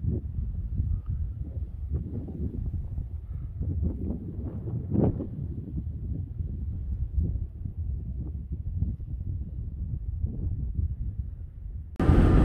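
Wind buffeting the microphone in a low rumble, with irregular soft knocks and bumps throughout.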